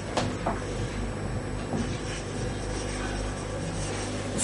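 Room tone: a steady low hum with a few faint clicks near the start.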